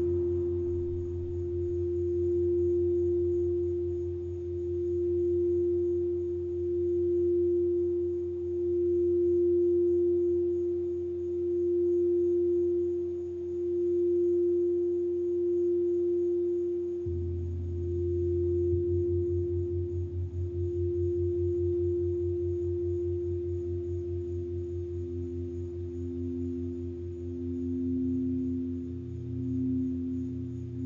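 Crystal singing bowls sounding long, steady tones that pulse slowly in loudness as they are played with a mallet. About halfway through a deeper hum comes in suddenly, and near the end a second, lower bowl tone swells in and out.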